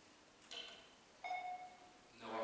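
A sharp click about half a second in, then a short ringing ding that fades within about half a second.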